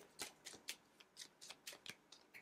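A deck of small message cards being shuffled by hand: about ten faint, light card flicks spread through the moment.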